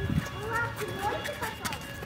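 Indistinct talking and calling from several people, with high voices among them, and a few sharp clicks scattered through it.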